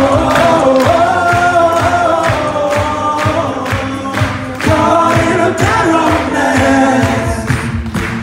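Male a cappella group singing live in close harmony, sustained chords shifting under the lead, with vocal percussion keeping a steady beat of about two strokes a second.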